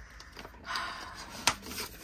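Rustling of a clear plastic binder pouch and paper dollar bills being handled, with one sharp click about one and a half seconds in.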